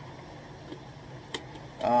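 Quiet room tone with a steady low hum, a faint tick and then one sharp click about a second and a half in, from a Funko Pop vinyl figure box in a clear plastic protector being handled.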